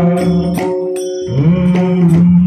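Marathi gavlan devotional song: a male voice sings held notes into a microphone over small hand cymbals and a drum. The low sung note breaks off about a second in and a new phrase starts soon after.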